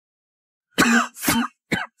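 A man's short pained vocal cries, three in quick succession, starting about three quarters of a second in after a silent start.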